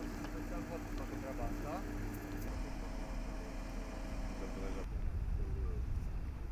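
An engine idling steadily, with people talking quietly nearby. About five seconds in the sound changes abruptly to a low rumble.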